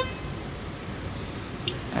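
Steady low rumble of street traffic, with a short faint click near the end.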